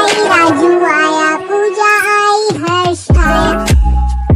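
Hindi children's nursery rhyme: a high, child-like singing voice carries the melody over music, and a deep bass beat comes in about three seconds in.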